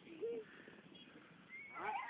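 Faint shouts of people calling out, one short call just after the start and a longer, higher call near the end.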